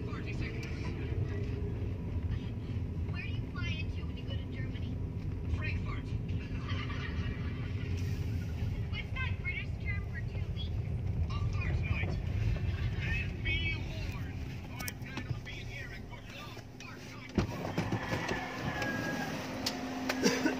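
Steady low rumble of a car driving, heard from inside the cabin, with muffled voices over it. About three seconds before the end a sharp click comes, and the rumble gives way to a brighter, noisier sound.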